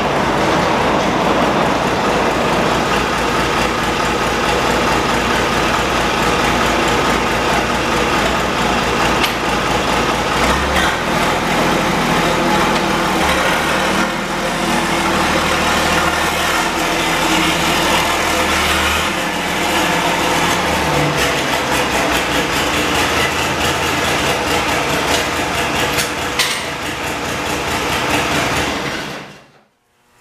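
Allis-Chalmers 185 tractor's six-cylinder diesel engine running steadily as the tractor moves; its low note shifts between about 10 and 20 seconds in. The sound cuts off abruptly just before the end.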